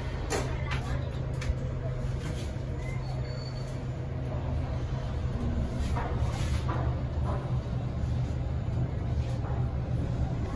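Otis passenger lift riding down: a steady low hum in the car, with a few clicks near the start as the doors shut. Faint voices can be heard in the background.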